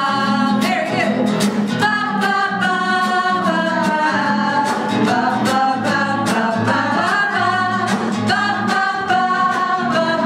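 Several women singing a song together to a strummed acoustic guitar, in a steady rhythm.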